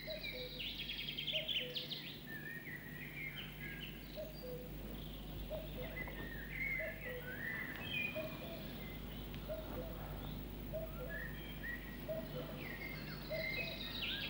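Outdoor birdsong ambience: several birds chirping high and busily, with a short lower call repeating every second or two, over a faint steady hum.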